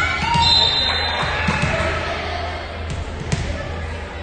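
Gymnasium sound during a volleyball game: voices of players and spectators calling out, with scattered thuds of the ball and feet on the hardwood floor.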